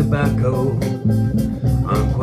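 Electric guitar playing an instrumental passage between sung lines: a run of plucked notes over sustained low bass notes.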